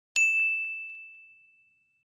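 Notification-bell ding sound effect from a subscribe-button animation: one bright, high ding just after the start, fading away over about a second and a half.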